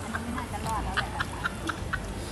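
A woman laughing in short breathy bursts, about four a second.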